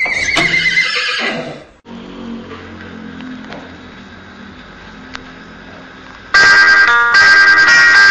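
A horse whinny, a wavering call falling in pitch, that ends about two seconds in; faint low tones follow, and about six seconds in loud music starts with repeated bright notes.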